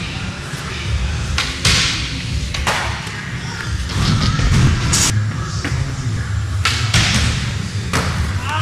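Skateboard wheels rolling on a concrete floor in a continuous low rumble, with a few sharp clacks of the board hitting the ground from flatground tricks.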